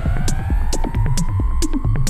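Electronic music played live on a modular synthesizer: a throbbing low bass pulse with regular high clicks, about two to three a second, and a synth tone that glides upward and then holds steady.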